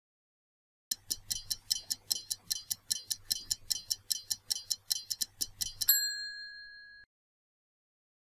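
Stopwatch ticking sound effect, about five ticks a second for some five seconds, ending in a single bell ding that rings for about a second and cuts off: a quiz countdown timer running out.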